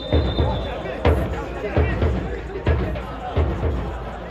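A bass drum beaten in a steady rhythm, a little more than one stroke a second, with voices singing or chanting along, as supporters do at a football match.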